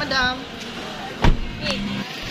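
Snatches of talk, with a single loud, low thump a little past halfway that is the loudest sound here.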